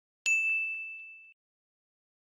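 A single bright ding, a bell-like chime that starts sharply and fades away over about a second. It is an edited-in sound effect accompanying a pop-up arrow and caption on a freeze frame.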